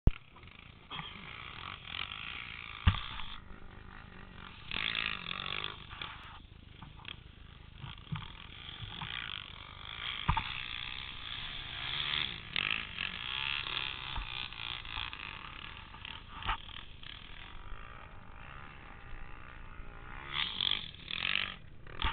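Several sport quads' single-cylinder four-stroke engines revving at a distance, the sound surging and dropping unevenly as the riders get on and off the throttle, with a few sharp clicks.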